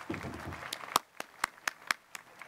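Sparse applause from an audience: a brief noisy swell, then a handful of separate sharp hand claps, about five a second, dying out.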